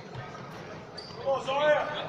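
Basketball bouncing on a hardwood gym floor, low thuds in a large hall, with a brief high squeak about a second in. A voice calls out in the second half.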